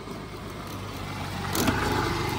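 Motor scooter approaching and passing close by. Its engine and tyre noise swell to a peak near the end.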